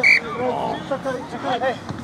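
A referee's whistle gives one short, shrill blast, stopping play after a tackle.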